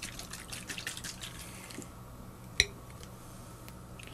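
Water and sugar sloshing in a plastic graduated cylinder shaken by hand to dissolve the sugar, a run of small liquid splashes and clicks that stops about two seconds in. A little later comes a single sharp knock as the cylinder is set down upright on the wooden table.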